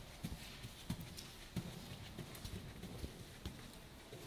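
Hooves of a Friesian horse walking on the sand footing of an indoor arena: soft, uneven thuds about two a second.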